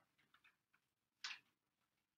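Near silence with a few faint, irregular clicks and one slightly louder short click about a second in.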